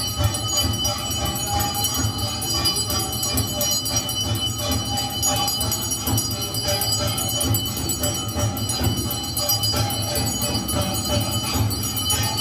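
Temple bells and metal percussion clanging continuously and rhythmically for a Hindu aarti, a dense ringing over a steady low beat.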